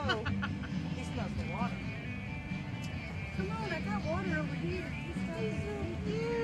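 Background music with a voice singing in it, over a steady low rumble.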